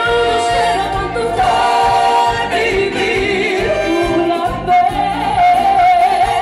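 Live Latin dance band playing with a vocal holding long sung notes over a steady beat.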